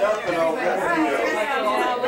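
Indistinct chatter: several people talking over one another, with no words clear enough to make out.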